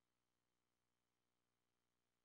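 Near silence: an empty audio track with only a faint, steady electrical hum and hiss.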